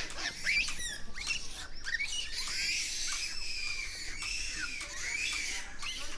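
Japanese macaques calling: many short, high-pitched squeaks and arching chirps overlap one another, over a steady high hiss.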